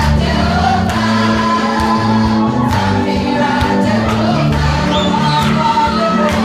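A church choir singing a gospel song in parts, with instrumental backing of a deep, steady bass line and percussive beats.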